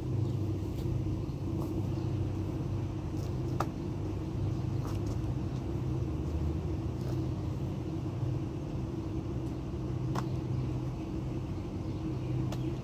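Steady low hum of an idling vehicle engine, with a few faint clicks over it.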